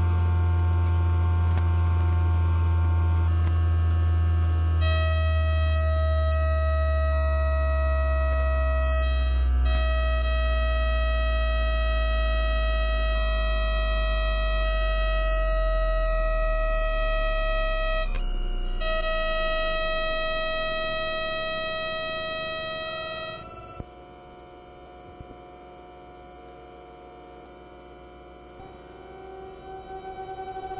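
Electronic drone music: a loud deep hum slowly sliding down in pitch under layered steady high tones and slow falling glides. About 23 seconds in it all cuts off, leaving a much quieter background with a few small clicks.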